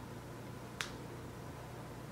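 Quiet room tone with a single short, sharp click a little under a second in.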